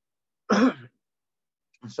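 A man clearing his throat once, a short rough burst about half a second in.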